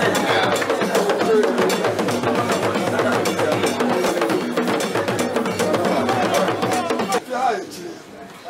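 Drumming and percussion in a fast, busy rhythm with many voices over it, dropping off sharply about seven seconds in.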